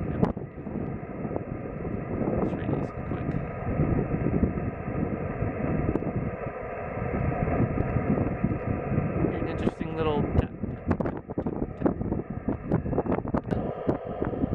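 A Yaesu FT-897 transceiver's speaker hissing with receiver noise as it is tuned across an empty 2-metre band in upper sideband. About ten seconds in, a whistling tone slides in pitch as the tuning passes a carrier.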